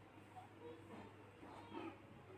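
Near silence: faint room tone with a steady low hum and a faint short sound near the end.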